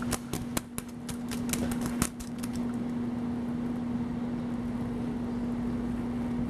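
Stunt airbag's inflation blower running with a steady hum. A quick, irregular run of sharp clicks over the first two and a half seconds, then only the hum.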